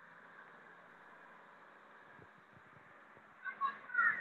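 Faint steady hiss of background noise coming through an open microphone on a video call, with a faint voice starting near the end.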